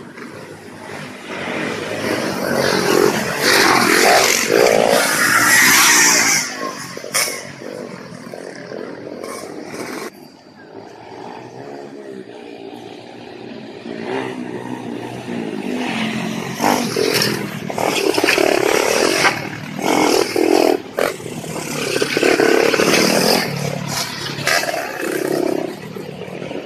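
Trail motorcycle engines revving and running, rising and falling in pitch, loudest about two to six seconds in and again through most of the second half.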